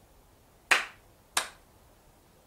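Two sharp hand claps, about two-thirds of a second apart, each fading quickly.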